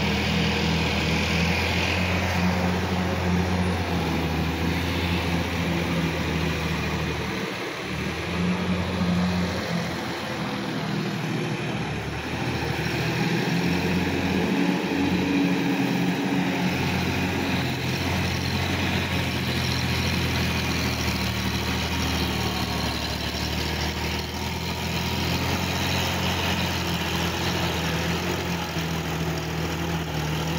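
Sonalika DI 50 RX tractor's diesel engine running steadily under load as it works through a flooded, muddy paddy field. Its low note drops away for a few seconds a third of the way through, then returns.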